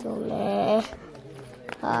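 A loud animal call lasting a little under a second at the start, followed by a quieter stretch.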